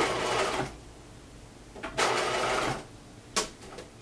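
Bernina sewing machine stitching a skirt hem in two short runs, the first stopping less than a second in and the second lasting under a second about halfway through, with one sharp click near the end.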